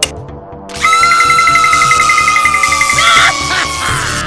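A cartoon punch hitting a machine's control panel, then a loud, long electronic tone that slowly falls in pitch with a fast flutter in it, over background music.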